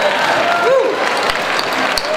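Large audience in a hall applauding and cheering, with a few voices shouting over the clapping.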